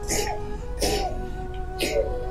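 A woman sobbing: three short catching sobs about a second apart, over soft background music with held notes.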